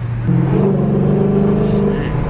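Dodge Challenger's 5.7 HEMI V8 heard from inside the cabin while the car is driven hard. Its note steps up in pitch and loudness about a quarter second in, then runs on steadily.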